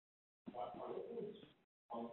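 Faint, muffled speech of an audience member asking a question away from the microphone. It starts about half a second in and cuts in and out abruptly.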